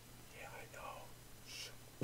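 Faint whispered muttering from a man, with a breathy hiss near the end, over a low steady hum.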